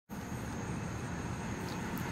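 Steady outdoor background noise, a low rumble under a hiss with a faint steady high tone, cutting in suddenly from silence.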